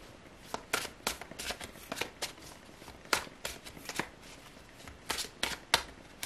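A deck of tarot cards being shuffled in the hands: an irregular run of short card snaps and slaps.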